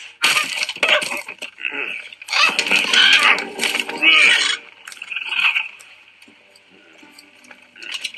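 Sound effects from an animated short film: a run of clattering and cracking over the first four seconds or so, then dying down to a faint steady hiss.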